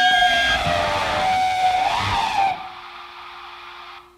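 The final bars of an alternative rock song: distorted electric guitars and rhythm section holding long, wavering high tones, then stopping together about two and a half seconds in. A fading ring and a faint steady hum are left behind.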